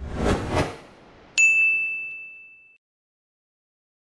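Logo sting sound effect: two quick whooshes, then a single bright ding, the loudest part, that rings and fades out over about a second.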